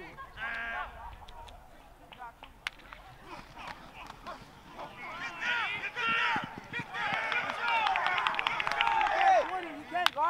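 Several voices shouting and yelling together during a football play, growing louder from about halfway through, with a run of sharp clacks of pads and helmets colliding near the end.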